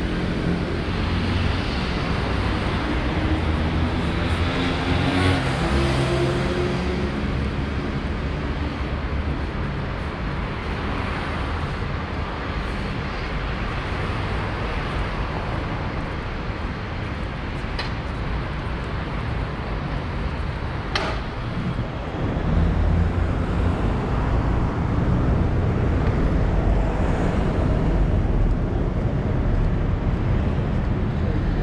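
City street traffic: a steady rumble of passing cars, heavier for the last third or so.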